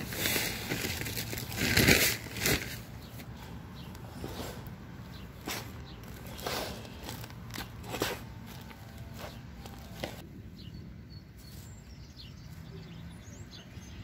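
Gloved hand mixing sand into garden soil in a plastic tub: irregular rustling and scraping of soil, with the loudest scrape about two seconds in and softer scuffs after it.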